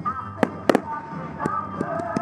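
Aerial fireworks shells bursting: a sharp bang about half a second in, then a louder close pair of bangs just after, and fainter reports later, over music playing.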